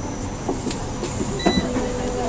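Running noise inside a San Francisco Muni transit vehicle, with a few sharp clicks and rattles and a brief high beep about three quarters of the way through.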